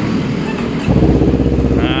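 A motorcycle engine starts suddenly about a second in and settles into a steady idle, over other motorcycle engines already idling.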